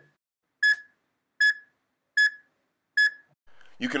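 Heart-rate beeps from the EKG recording software, one short electronic beep for each detected heartbeat. Four beeps come about 0.8 s apart, a steady pulse of roughly 80 beats a minute.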